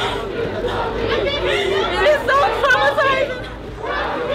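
A woman's voice speaking through tears, the words not intelligible.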